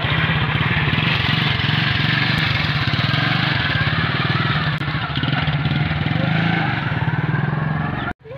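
Honda motorcycle engine running steadily with a fast, even beat as the bike rolls slowly along.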